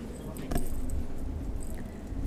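Low hall noise with a sharp knock about half a second in and a few faint scattered clicks and clinks.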